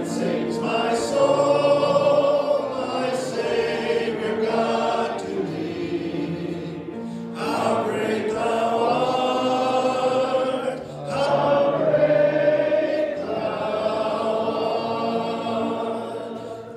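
A congregation singing a slow hymn together in long held phrases, a man's voice leading through a microphone, with a short break between phrases about eleven seconds in.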